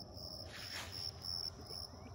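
Insects chirping: a high, thin chirp pulsing several times a second, with a brief soft hiss just under a second in.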